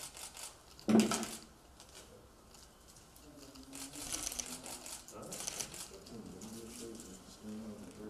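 Crinkling of an adhesive bandage wrapper being opened and the bandage pressed onto the arm, in two short bursts around the middle, with low murmured voices. A short loud sound about a second in is the loudest thing.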